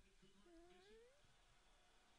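Near silence, with one faint rising call lasting under a second, about half a second in.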